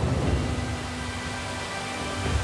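Steady rush of waterfalls, heard under background music with sustained notes.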